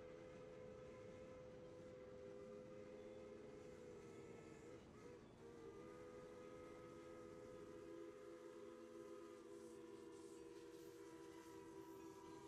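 Faint steam locomotive whistle sounding a held chord of several tones, with a short break about five seconds in.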